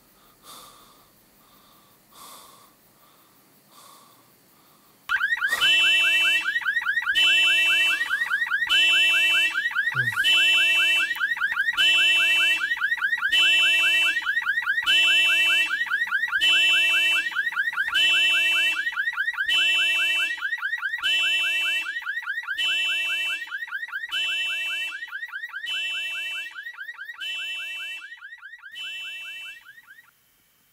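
An electronic ringer going off about five seconds in: a harsh beeping note repeating about every 0.8 seconds over a fast, continuous rattling buzz. It grows slightly fainter towards the end and then stops abruptly.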